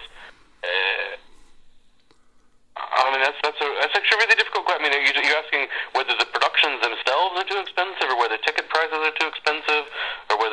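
Speech only: a short vocal sound, then a pause of about two seconds, then a voice talking continuously.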